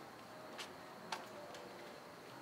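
Quiet background with two faint, sharp ticks about half a second apart, the second louder.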